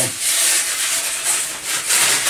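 A large, stiff handmade model rubbing and scraping as it is pulled up and handled, a continuous rough rasping.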